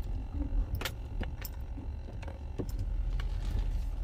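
Inside a slowly moving car: a steady low engine and road rumble, with scattered light clicks and rattles from the cabin.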